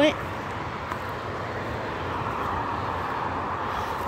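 Road traffic noise: a steady rush with no distinct tones, growing slightly louder through the second half, as when a vehicle approaches.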